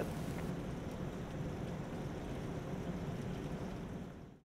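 Steady bubbling and churning of water in a semiconductor wet-bench rinse tank.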